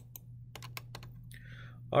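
About half a dozen light, quick clicks on a computer keyboard during the first second, over a steady low electrical hum.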